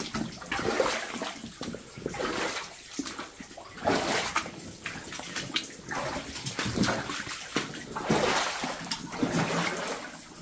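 A person wading through shallow standing water in a flooded mine tunnel, each stride sloshing and splashing, about once a second.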